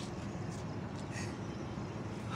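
Steady low background noise, an even hiss with no distinct event standing out.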